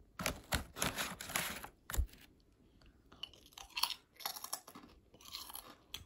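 Crunchy food being chewed close to the microphone: a dense run of crisp crunches for about two seconds, then sparser, separate crunches.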